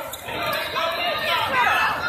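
Basketball bouncing on an indoor court during play, with voices calling out in the gym.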